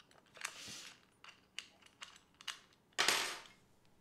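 A SmallRig L-bracket being unscrewed and taken off a camera body: a soft rustle, a few sharp small clicks, then a louder brief scraping rustle near the end as it comes away.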